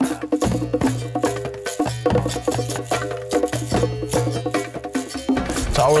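Background music with a steady percussive beat of wooden clicks over held notes and a bass line.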